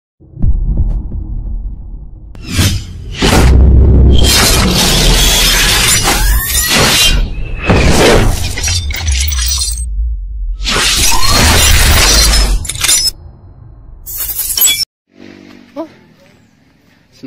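Cinematic logo-intro sound effects: a series of loud whooshes, impacts and a shattering crash over a deep bass rumble, with a few rising sweeps. The last burst cuts off suddenly a little before the end, leaving faint background.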